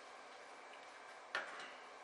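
Quiet room with faint steady background noise and a single sharp keyboard click about a second and a half in.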